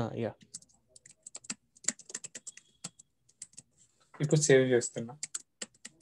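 Computer keyboard being typed on: a quick, uneven run of keystrokes lasting about three seconds, then stopping.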